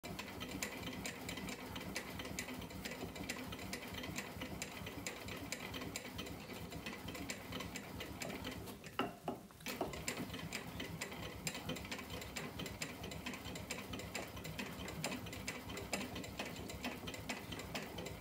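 A hand-operated bat-rolling machine pressing the barrel of a composite baseball bat between its rollers as the bat is worked back and forth, giving a steady run of quick small clicks and ticks. The clicking briefly drops away about nine seconds in, then resumes.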